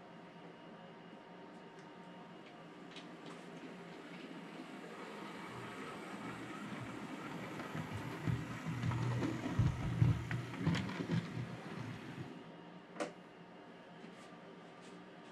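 OO gauge model steam locomotive running along the track and over the points. Its motor and wheels grow louder as it comes close, then stop abruptly about twelve seconds in, and a single sharp click follows.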